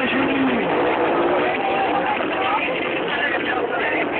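Crowd voices mixed with motorcycle engine noise, a dense steady din.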